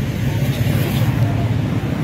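A vehicle engine running steadily at idle, a constant low hum under outdoor background noise.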